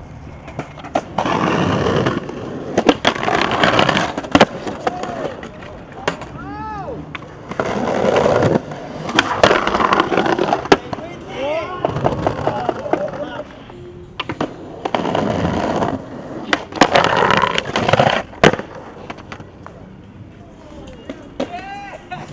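Skateboard wheels rolling over concrete and paving in about three runs of a few seconds each, broken by sharp clacks of boards popping and landing.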